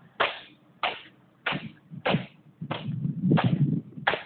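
Footsteps on a concrete floor: a sharp slap or scuff about three times every two seconds, at a walking pace, with a louder rustling scrape between the steps in the second half.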